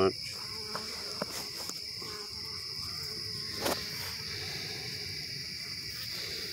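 Steady high-pitched chirring of crickets. A few light clicks and one louder knock about three and a half seconds in come from the plastic mating nuc and its frames being handled.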